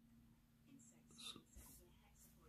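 Near silence: room tone with a faint steady low hum and a few soft, faint breathy noises a little over a second in.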